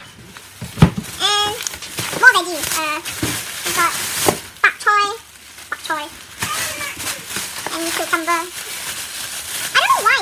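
Short, high-pitched voiced exclamations without clear words, over the crinkling and rustling of thin plastic grocery bags being handled. A dull thump comes about a second in.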